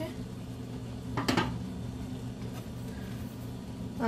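A single sharp clink of a lid or steel ladle against a stainless steel saucepan of boiling soup, over a steady low hum.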